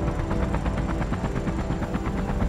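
A steady low, engine-like rumble with a rapid, even flutter of about a dozen pulses a second.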